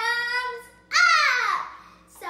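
A young girl's voice singing out a held note, then a loud, high sung note that slides down in pitch about a second in.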